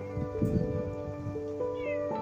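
A dog in a pen crying out with a short whining call about half a second in, with falling whine-like tones near the end, over steady soft background music.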